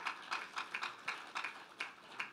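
A congregation clapping: a light, even patter of hand claps, about four a second.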